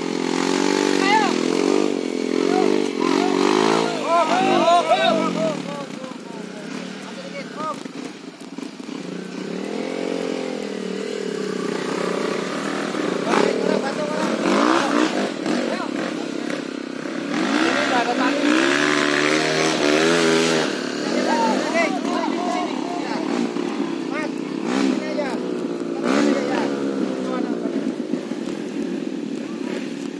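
Trail-bike engines revving up and down again and again as the bikes are worked through deep mud, with voices shouting.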